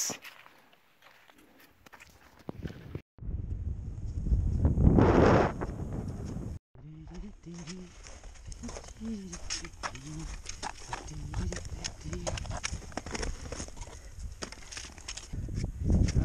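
Boots crunching steps into snow and ski-pole tips clicking against snow and rock during a climb on foot, in many irregular clicks. A gust of wind hits the microphone about five seconds in.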